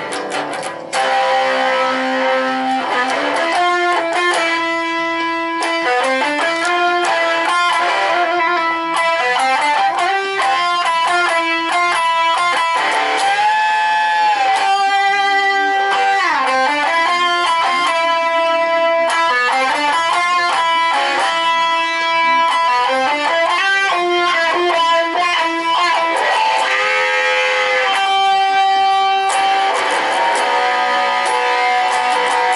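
Fender Stratocaster electric guitar playing a melodic line of picked single notes and chords. It gets louder about a second in, and several notes are bent up and down in pitch.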